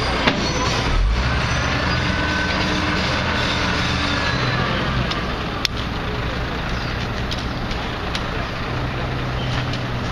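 Crane truck's diesel engine running steadily, with a sharp knock a little after halfway through.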